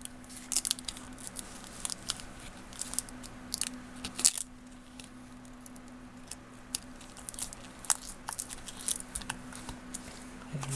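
Adhesive paper label crinkling and crackling as it is handled and pressed by hand onto a sealed lead-acid battery pack, in scattered short crackles with a quieter stretch in the middle.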